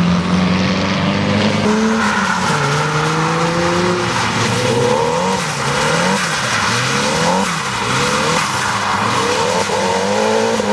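Nissan 240SX drift car's engine revving hard as it slides, its pitch climbing about two seconds in, then swinging up and down several times in quick succession as the throttle is worked, over tyre noise on the wet track.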